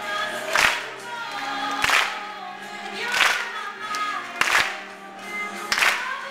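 Live band music with singing over keyboard and guitar. A sharp clap lands on the beat about every 1.3 seconds, from the crowd clapping along.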